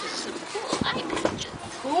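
Indistinct background chatter of young children and adults, with a few soft handling clicks.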